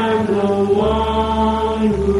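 Mid-1960s soul vocal group recording: voices hold a sustained harmony chord over a bass line, and the chord shifts about a second in.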